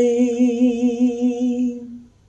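A woman's solo voice holding the last sung note, on the word 'đời', with an even vibrato of about five wavers a second, tapering off near the end.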